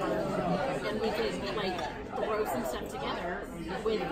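Several people talking over one another at a restaurant table, with dining-room chatter behind.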